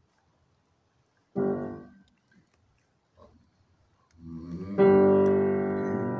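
Grand piano playing. One short chord about a second and a half in is released quickly. Then, from about four seconds in, the sound builds into a loud sustained chord that keeps ringing to the end.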